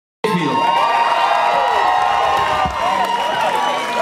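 Live-music crowd cheering and whooping, many voices overlapping, with a steady held tone underneath. It cuts in suddenly just after the start.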